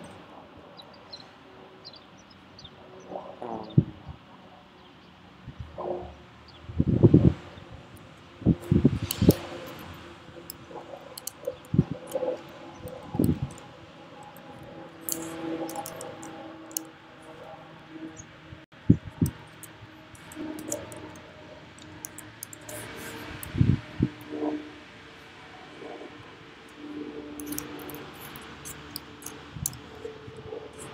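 Laptop keyboard typing and clicking, in short scattered clusters of sharp ticks, with a few louder dull thumps of handling noise, the strongest about seven, nine and twenty-three seconds in.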